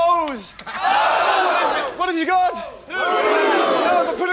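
Loud shouting call and response: a man's quick yelled calls, each answered by a long rising-and-falling yell from a studio audience, twice.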